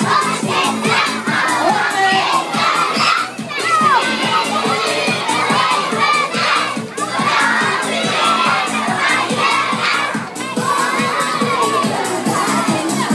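A large crowd of children shouting and cheering over loud dance music with a steady beat.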